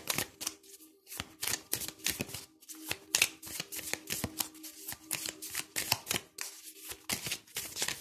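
A deck of oracle cards being shuffled by hand: a steady run of quick, irregular card flicks and riffles.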